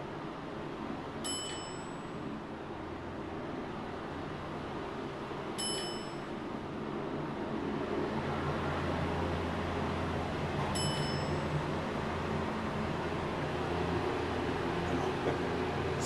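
Otis hydraulic elevator car moving between floors: a steady hum and rumble of the ride that grows somewhat louder about halfway through, with three short electronic dings about four to five seconds apart as floors pass.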